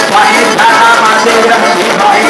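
Live dance band playing a loud, steady Latin-style tune, the sound of the music as heard on the dance floor.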